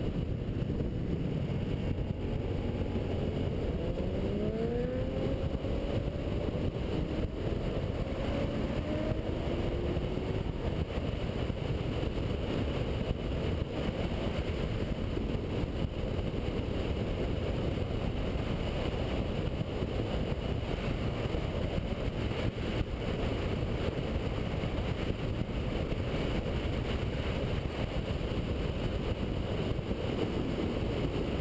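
Sport bike engine accelerating, its pitch rising in several climbs about 3 to 10 seconds in, under heavy wind rush on the camera microphone. After that, a steady mix of wind and engine at cruising speed.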